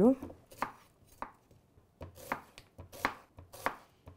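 Kitchen knife slicing an onion on a wooden cutting board: a run of sharp, unevenly spaced strokes as the blade cuts through onto the board, with a brief pause in the first half.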